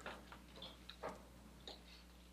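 Chalk writing on a blackboard: a handful of faint, light taps and short strokes, scattered unevenly, the clearest about a second in.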